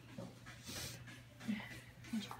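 Faint sounds from a kitten being held still: soft breaths, with a short low sound about one and a half seconds in.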